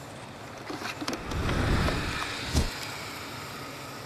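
A motor vehicle's rumble swelling up and easing off again over about two seconds, with a single sharp knock near its loudest point.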